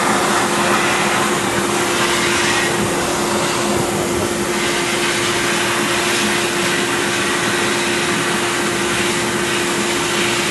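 Steel shot blasting from a blast-cabinet nozzle onto a waffle iron plate, stripping its old Teflon coating: a steady, unbroken hiss of compressed air and shot, with a steady hum underneath.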